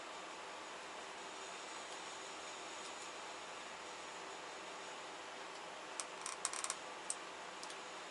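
Faint steady hiss of background noise, then about six seconds in a brief irregular run of small sharp clicks and ticks as metal compression fittings for the truck's air lines are handled and fitted by hand.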